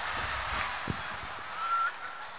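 Theatre audience laughing while a performer stamps and hops on a stage, with a few low thuds in the first second. Near the end a short, high, honking squeal of a voice rises slightly and is the loudest sound.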